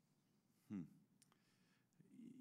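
Near silence: a short, falling 'hmm' from a man about to answer, followed a moment later by a couple of faint clicks.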